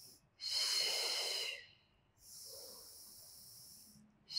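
A woman breathing audibly through a clip-on microphone during a paced breathing exercise: one louder breath about half a second in, then a softer, longer one about two seconds in.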